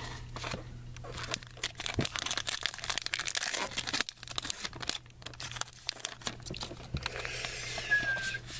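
Plastic wrapper of a trading-card pack being torn open and crinkled by hand, then the cards handled and slid against each other. Dense crackling, busiest from about two to four seconds in, over a steady low hum.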